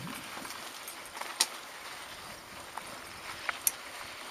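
Mountain bike rolling along a dirt trail: a steady rush of tyre and wind noise with a few sharp clicks and rattles from bumps, the loudest about a second and a half in.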